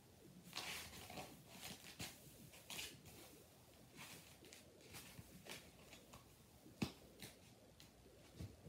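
Faint, irregular squishing and rustling of a soft white fidget toy being squeezed and handled, with one sharp click about seven seconds in.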